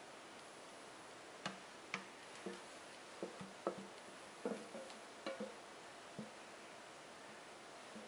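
Spatula knocking and scraping against a stainless steel mixing bowl while thick chocolate mousse is scraped out: about a dozen faint, irregular knocks, some with a short metallic ring, in the first three quarters.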